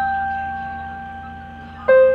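Portable electronic keyboard on a piano voice: one held note fading slowly, then a lower note struck near the end, over a faint steady low hum.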